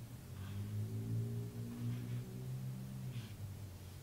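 A man's low, closed-mouth hum, held for about three seconds with small steps in pitch, then fading out.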